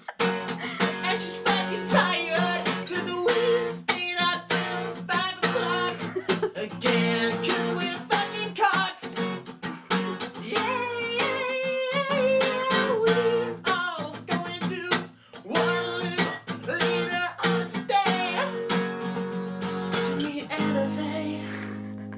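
Acoustic guitar strummed fast and hard while a man sings along. Near the end the strumming stops on a single held chord that rings out.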